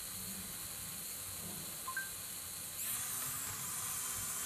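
Two short electronic beeps, a lower then a higher tone, from the phone's voice-command app about two seconds in. From about three seconds a louder, high-pitched hissing whir as the toy mini quadcopter's small motors speed up.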